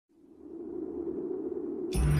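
Intro sound effect: a steady low tone fades in from silence and holds, then a sudden loud burst hits just before the end as the intro music starts.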